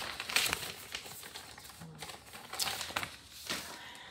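Paper and plastic packaging of a cross-stitch kit rustling and crinkling as it is handled and set aside, in a few short spells. A brief low hum from a person about two seconds in.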